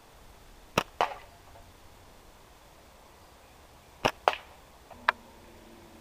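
Two slingshot shots about three seconds apart. Each is a sharp snap as the bands are released, followed about a quarter second later by a ringing hit on the tin can target. A lighter click comes near the end.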